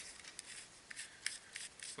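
Faint handling noise from a flashlight being turned over in the hands: quiet rubbing with a few light clicks.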